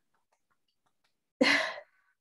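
Near silence, then about one and a half seconds in a single short, loud, breathy sigh from a person.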